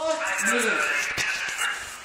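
A man's voice exclaiming, over a steady hiss.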